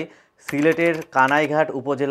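A man's voice narrating in Bengali, with a brief pause just after the start.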